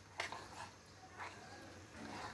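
A spoon stirring thick cake batter in a ceramic bowl, faintly: a sharp clink of the spoon on the bowl about a quarter second in, then a few soft scrapes.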